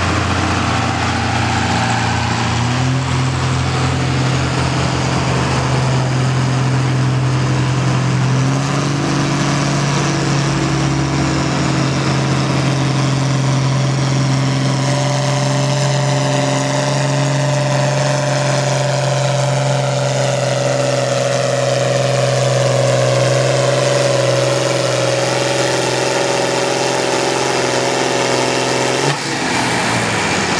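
John Deere 4020's six-cylinder engine running hard under load while pulling a weight-transfer sled. Its note steps up in pitch about two seconds in and again around eight seconds, holds, then sags slowly, and changes abruptly about a second before the end as the pull stops.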